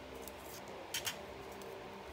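Faint handling sounds of paper craft materials on a work table, with one short crisp click or crinkle about a second in over a low steady room hum.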